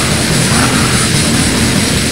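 Raw, lo-fi black/death metal: a dense, unbroken wall of distorted guitars and drums at a loud, steady level.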